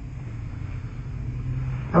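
A steady low hum with rumble underneath, in a pause between words.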